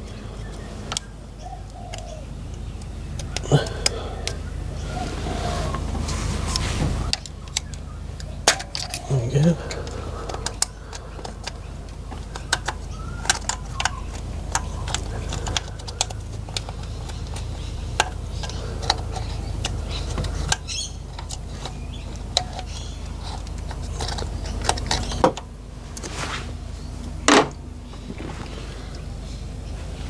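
Scattered small plastic and metal clicks and taps as a screwdriver pries back the grey locking clips and the wiring plug is worked off a fuel injector, over a steady low hum.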